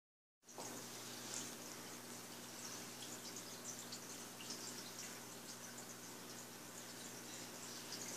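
Faint sound of a running saltwater aquarium: a low steady hum from its equipment, with light, irregular crackle of moving water over it.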